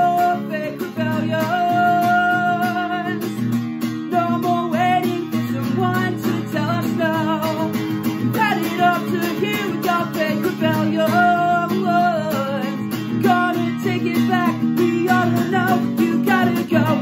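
Acoustic guitar strummed in steady chords, with a man singing held, sliding notes over it.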